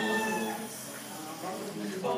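A pause in group singing of a chant: a held note fades away in the first half-second, leaving a low murmur of voices, and the singing picks up again at the very end.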